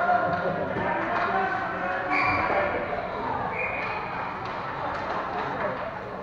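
Indistinct spectator voices talking in an ice hockey arena, with faint knocks from play on the ice. There are two short high tones, about two and three and a half seconds in.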